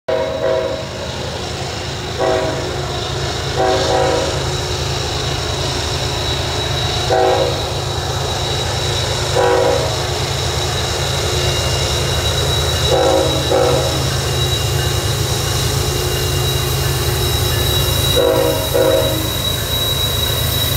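GE ET44AC and ES44AC diesel locomotives working slowly uphill under load, with a steady low engine rumble. Over it the lead locomotive's horn sounds a series of short blasts, several seconds apart.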